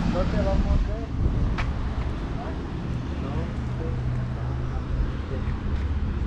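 Low, steady rumble of a vehicle engine or traffic, with a held low hum through the middle, overlaid by faint, brief voices and a single click.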